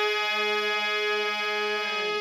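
Harmonium holding one long, steady, reedy note that slowly fades.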